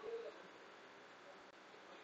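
Near silence: room tone, with a faint, brief low tone just at the start.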